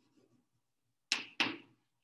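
Chalk striking a chalkboard in two short, sharp strokes about a second in, a third of a second apart, as a symbol is written.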